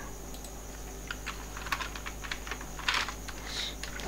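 Computer keyboard being typed on: a few scattered keystrokes, with a quick cluster about three seconds in, over a low steady hum.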